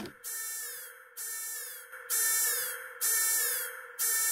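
A synthesized electronic tone pulsing about once a second, each pulse with a falling shimmer on top. The pulses get louder about two seconds in.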